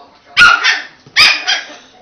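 A German Spitz (Kleinspitz) puppy barking in two loud bursts, under a second apart.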